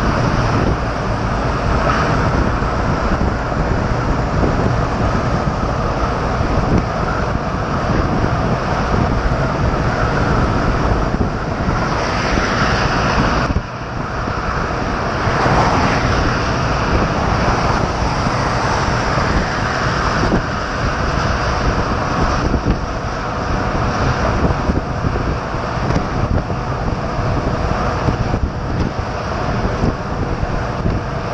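Mercedes-Benz truck driving at motorway speed: steady road and wind noise, with a brief drop in level a little under halfway through.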